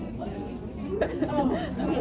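Voices chattering, with talk growing louder from about a second in.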